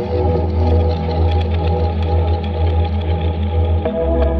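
Electronica track with a deep held bass note under layered held chords and faint ticking percussion; the bass and chords move to new notes at the start and again just before the end.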